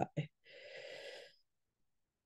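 The last of a spoken word, then a short breath drawn in by the speaker about half a second in, lasting under a second.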